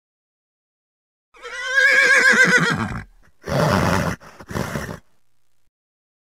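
A horse whinny, a wavering high call about a second and a half long, followed by two short, rough, noisy bursts.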